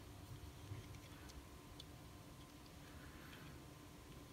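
Near silence with a few faint small ticks of fingers working a tiny 2-56 set screw into a pistol magazine extension.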